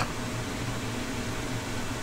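Steady background room noise: an even hiss with a faint low hum, unchanging throughout.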